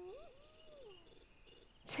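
Crickets chirping steadily, a short high-pitched chirp about three times a second. A faint held tone rises and then falls away in the first half.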